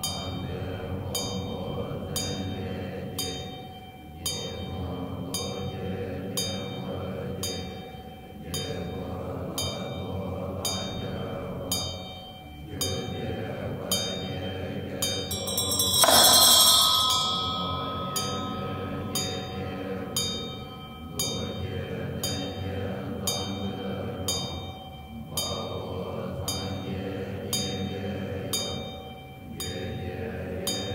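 Tibetan Buddhist monks chanting a sadhana in low unison, pausing for breath about every four seconds, over a steady beat of sharp percussion strikes about once a second. About halfway through comes one loud, bright metallic crash that rings on briefly.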